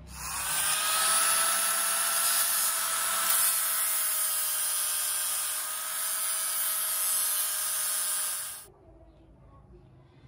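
SAFUN SF9100C angle grinder running up to speed and grinding the steel blade clamped in a vise: a steady whine over a loud grinding hiss. It stops abruptly shortly before the end.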